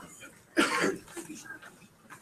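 A single short cough about half a second in.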